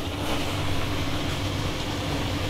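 Water sprayed from a hose gun onto the hot sauna stones, hissing steadily as it turns to steam; the hiss starts a moment in, over a low steady hum.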